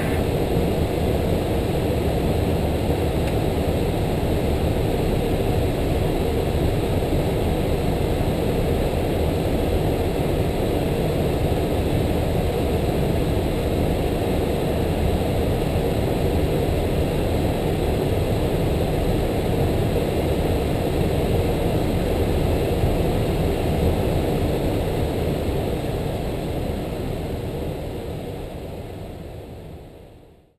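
Steady flight-deck noise of an Airbus A330-300 in flight: an even rush of airflow and engine sound, fading out over the last few seconds.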